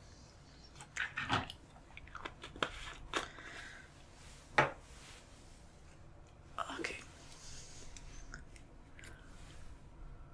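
Make-up brush and face-paint supplies handled close to the microphone: scattered soft clicks and crackles, the sharpest a single click about halfway through.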